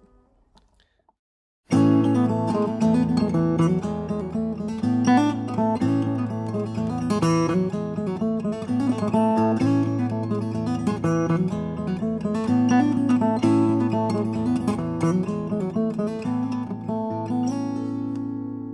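Steel-string acoustic guitar in open G tuning with a capo, fingerpicked: a melodic passage over steady low bass notes that starts suddenly after a short silence and ends on a ringing chord.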